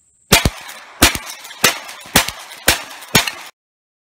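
A lever-action rifle fired six times in quick succession, about half a second to two-thirds of a second between shots. The sound cuts off suddenly after the last shot.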